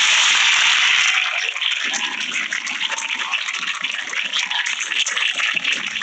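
Studio audience applauding, loudest for about the first second, then steady.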